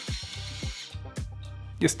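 Stainless steel electric pepper grinder's small motor running, grinding black peppercorns, with a steady high hiss that cuts off about a second in.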